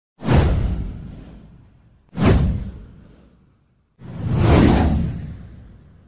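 Three whoosh sound effects of a title intro, about two seconds apart. Each starts sharply and fades away; the third swells up more slowly before fading.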